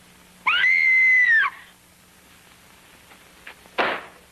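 A woman's scream, about a second long: it rises to a high held pitch and then falls away. A single sharp knock or thud follows near the end.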